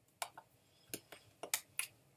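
A series of short, sharp clicks or taps, about six in two seconds at uneven spacing, the loudest of them past the middle.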